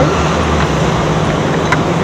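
A car engine idling close by over steady city traffic noise, with one short click near the end.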